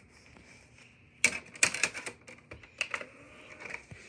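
Handling noise: a quick, irregular run of sharp clicks and knocks starting about a second in, with a few louder taps in the middle.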